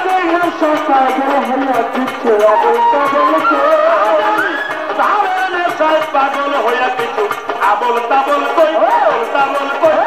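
Live Bengali Baul folk music: a wavering melody over a steady drum beat.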